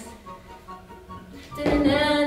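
A song plays quietly in the background, then about a second and a half in a woman loudly sings "da na", scatting the tune to count out dance moves.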